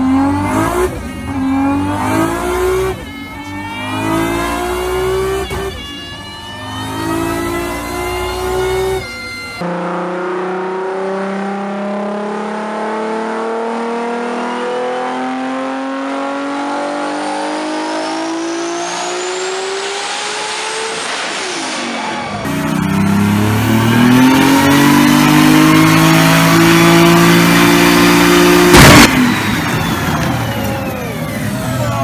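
Toyota Supra turbocharged 2JZ straight-six engines making full-throttle pulls on a chassis dyno, each rising in pitch. In the first pull the revs climb and drop back briefly about every three seconds as it shifts gear; after a cut a second car makes one long unbroken rise; a third pull climbs again and ends in a single sharp bang near the end.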